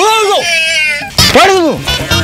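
A voice giving long, high, drawn-out calls, three in all, each rising and then falling in pitch, with a warbling stretch in the middle.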